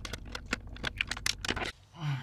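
A rapid, uneven run of small clicks and light knocks as cables and plugs are handled and pulled out at the back of a desktop PC, cutting off abruptly near the end.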